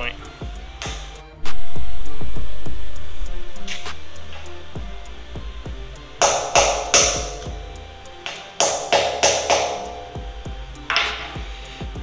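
A hammer tapping a quarter-inch steel roll pin to start it into a stainless steel coupling: sharp metallic pings in quick runs of three or four strikes about halfway through and again near the end, over background music.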